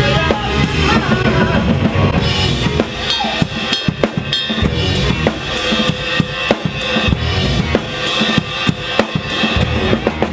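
Live rock band playing an instrumental passage with no singing: a drum kit's bass drum, snare and rimshots are to the fore, played as many sharp hits, over electric guitar and bass guitar.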